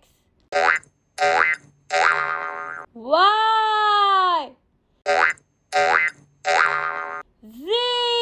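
Cartoon sound effects: short pitched calls in groups of three, each group followed by a long springy 'boing'-like tone that rises, holds and falls in pitch. This happens twice.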